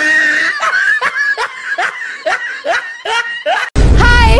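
Loud, high-pitched laughter in a run of short rising bursts, about two or three a second, cutting off abruptly just before the end.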